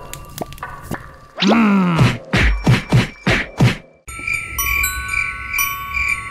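A cartoon voice wails with a falling pitch, followed by a quick run of short pitched vocal bursts. About four seconds in it cuts to a twinkling music cue with held, chime-like tones.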